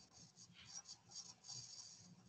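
Near silence: faint room noise and rustle picked up by an open video-call microphone.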